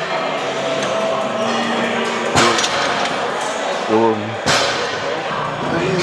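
Weight-room noise with brief shouts and two sharp knocks, about two seconds apart, over a steady background din.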